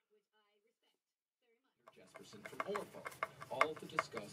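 Dead silence for about two seconds, then faint clicks and handling noise as a screwdriver drives screws into a plastic tremolo cover plate on the back of an electric guitar.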